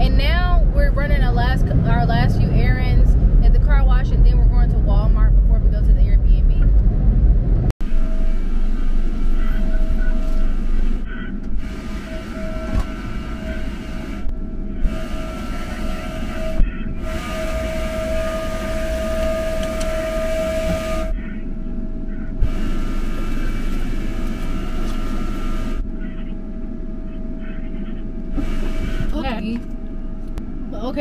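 Car-wash machinery rumbling deep and loud, heard from inside the car, under a woman's voice for the first several seconds. After a sudden cut, a steady machine drone with a high held whine that drops out briefly several times.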